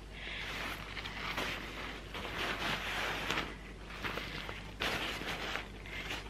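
Lightweight nylon packable daypack rustling as it is handled and lifted, the fabric and straps shifting on and off.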